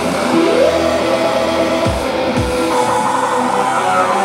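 Live band playing loud electronic rock, with keyboards, drums and guitar. A pitched line glides upward about half a second in, and low drum hits fall every so often.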